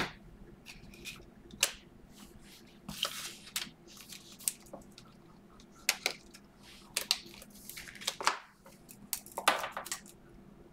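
Trading cards and rigid plastic card holders being handled: scattered clicks and taps with short plastic rustles, busiest about three seconds in and again near the end.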